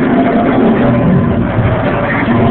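Loud, bass-heavy music playing.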